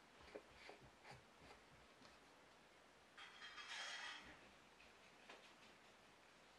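Near silence, with faint clicks of a small paint bottle and brush being handled on a worktable, and a brief soft rush of noise about three seconds in.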